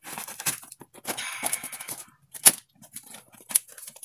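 Parcel wrapping being torn and crinkled open by hand, in irregular rustling bursts, with a sharp snap about two and a half seconds in as the loudest sound and another about a second later.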